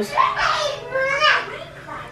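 A baby yelling, his voice sweeping sharply up in pitch about a second in.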